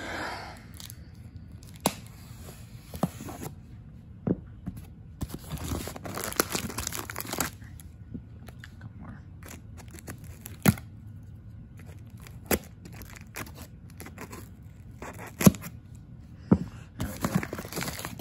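Packing tape on a cardboard box being slit with a knife and torn open, with a longer stretch of tearing about five to seven seconds in and scattered sharp clicks and scrapes from the cardboard flaps.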